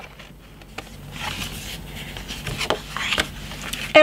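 Scissors cutting through folded cardstock, with paper rustling and a few sharp snips.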